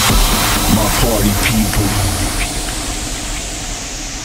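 Guaracha electronic dance mix in a transition: a white-noise sweep that falls and fades, over a thinning bass line, with short vocal snippets in the first second or so.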